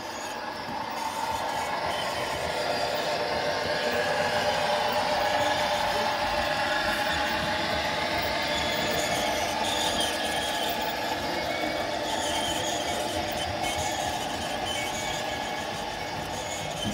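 Model passenger train running along the layout track: a steady running hum and rumble from the locomotives and wheels. It grows louder over the first few seconds and slowly fades as the train passes.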